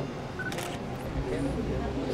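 Low background chatter of people talking, with a quick camera shutter clicking about half a second in.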